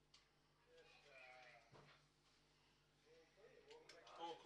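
Near silence: a low steady hum with faint, distant voices and a few soft clicks.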